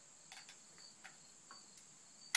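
Near silence: faint chirping of crickets in the grass, with a few soft clicks.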